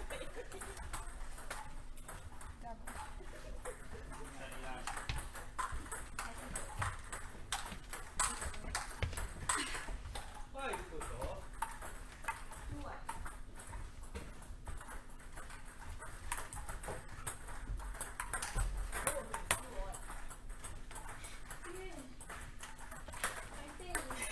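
Table tennis balls being hit in rallies at several tables at once: a steady scatter of short, sharp, irregular clicks of ball on bat and table, with voices talking in the background.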